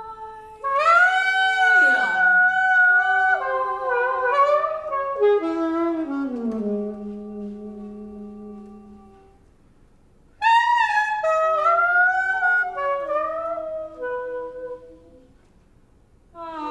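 Free-improvised saxophone playing against a second gliding melodic line, in phrases of held and sliding notes. One line sweeps steeply down about two seconds in. The playing thins out and stops briefly near the middle, then a new phrase starts about ten seconds in.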